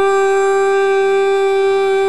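A woman singing a Tamil devotional verse in Carnatic style, holding one long, steady note.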